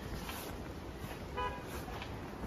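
Steady low background rush, with a vehicle horn giving one short toot about one and a half seconds in.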